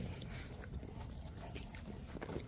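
Dogs play-fighting on dirt: faint animal vocal sounds with scattered scuffles and short clicks of movement.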